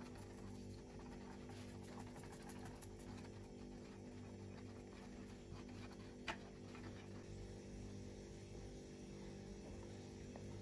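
Faint whisking in a saucepan of thickening milk pudding, soft scrapes over a low steady hum, with one sharp click about six seconds in.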